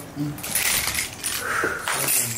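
Divination bones and shells clicking and rattling together as they are handled and gathered on the mat.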